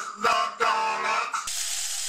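Electronic Dalek voice, ring-modulated and drawn out, ending on a long held tone. About one and a half seconds in it stops and a steady hiss with a low hum takes over.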